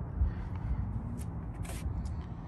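Low, uneven rumble of wind and handling noise on a handheld phone's microphone, with two brief rustles, one a little past a second in and one near the end.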